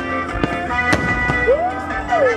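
Music playing over fireworks, with a few sharp, irregular firework bangs.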